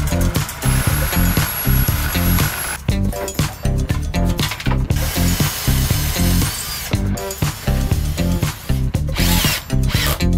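Cordless drill-driver whirring in short runs as it drives screws into plywood ceiling panels, over background music with a steady beat.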